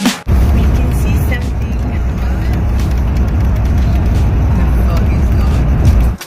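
Loud, steady low rumble of a coach bus on the move, heard from inside the passenger cabin: engine and road noise. It starts abruptly just after the beginning.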